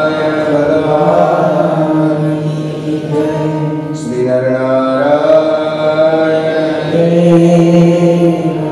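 A man's voice chanting Hindu devotional verses in a slow, melodic sung recitation, holding long sustained notes.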